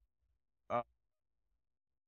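A pause in a man's speech: near silence, broken about two-thirds of a second in by one short filler 'uh'.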